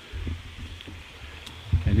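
Faint steady sound of running water from a small bush pond and waterfall, under a low rumble on the microphone.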